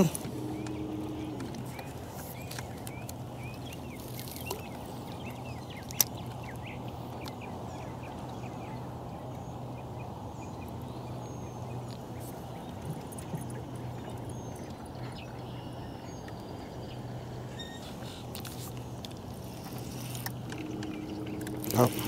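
Steady low hum with water and wind noise around a small fishing boat, with a few faint high bird chirps and one sharp click about six seconds in.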